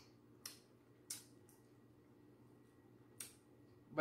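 Faint wet mouth smacks while chewing jerk chicken: a few short sharp clicks about half a second, a second, and three seconds in, over a quiet steady room hum.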